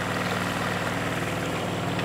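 A small boat's motor running steadily, an even drone with a fast regular pulse.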